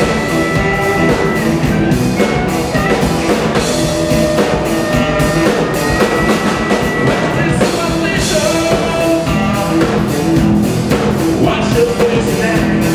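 Live blues band playing: electric guitar and drum kit, with long held harmonica notes over them and a singer on vocals.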